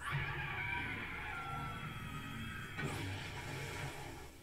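Television episode soundtrack played back quietly: a sustained, slowly shifting musical score with a low hum beneath.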